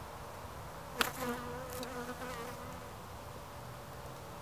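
Honeybees buzzing around an open hive, one passing close so that its wavering wingbeat drone stands out for about a second and a half. A single sharp knock about a second in is the loudest sound.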